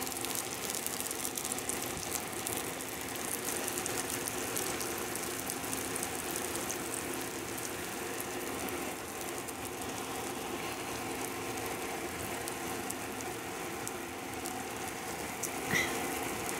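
Cornbread batter frying in hot oil in a preheated cast iron skillet: a steady crackling sizzle, the hot oil crisping the crust. A faint steady hum runs underneath.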